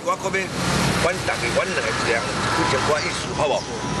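A motor vehicle passing on the street under a man's talk; its noise comes up about half a second in and lasts about four seconds.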